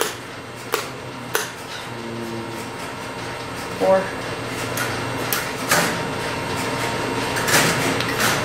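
Sharp, isolated clicks of keys and relays on a No. 1 Crossbar telephone switch's marker as digits are keyed in on its test frame, over a steady electrical hum from the equipment.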